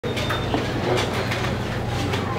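Steady background noise with a low hum and a few faint clicks.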